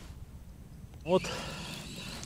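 Faint steady outdoor background noise with a low rumble underneath, and one short spoken word about a second in.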